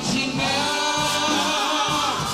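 R&B vocal group singing in harmony live, with a lead voice holding a note with vibrato in the second half.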